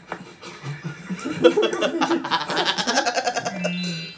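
A woman laughing hard in quick, rapid pulses that build about a second in and end in a held note, with music from the show playing underneath.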